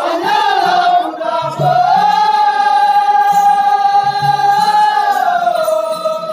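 A singer's voice in a sung passage of a folk stage drama, amplified through a stage microphone, drawing out long notes; one note is held steady for about three seconds, then the voice steps down to a lower note near the end.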